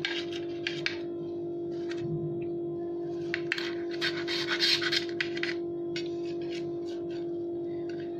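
Knife and fork cutting through a bread pizza omelette, the blades scraping and clicking against the plate in short strokes, busiest about three to five seconds in, over a steady background tone.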